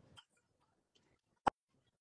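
Near silence broken by a single sharp click about one and a half seconds in.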